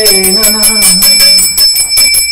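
A hand-held puja bell rung rapidly and continuously, its high ring steady throughout. A chanting voice holds a note over it for the first part and then breaks off.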